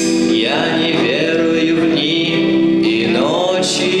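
Live rock band playing: electric guitars, drum kit and keyboard holding sustained chords, with a cymbal crash near the end.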